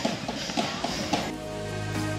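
Busy street noise from a crowd for the first second, then soft background music with long held notes cuts in a little over a second in.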